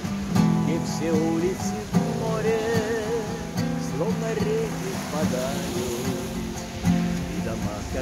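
A man singing a Russian bard song with vibrato in his voice, accompanying himself on a strummed acoustic guitar.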